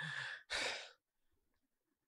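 A man's breath: two short, breathy exhales like a sigh, in the first second.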